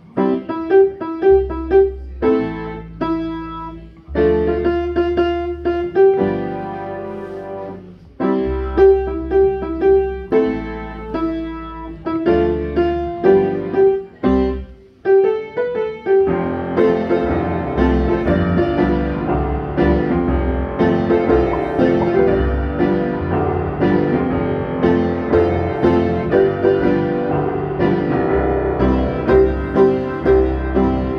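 Upright piano and electric bass guitar, played through a combo amp, playing a song together. For about the first sixteen seconds the piano chords come in short, rhythmic phrases over long held bass notes; then the playing turns fuller and continuous.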